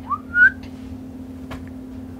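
A man whistles one short rising note near the start, lasting about half a second. A steady low hum runs underneath, and there is a faint click about a second and a half in.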